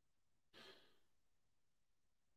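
Near silence, broken about half a second in by one short, faint exhaled breath into a close microphone, like a sigh.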